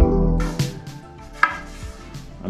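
Background music fading out, then a few light wooden knocks and one sharper knock about one and a half seconds in, as a laminated hardwood longboard deck is handled and tipped up against a workbench.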